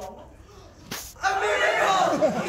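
A single sharp smack just before a second in, followed at once by a loud burst of many voices clamouring together.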